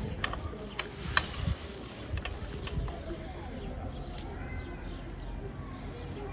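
A few light metallic clicks of open-end spanners on the Honda Africa Twin's swingarm chain-adjuster nuts, bunched in the first three seconds, as the adjuster is held still and its locknut snugged gently after tensioning the chain.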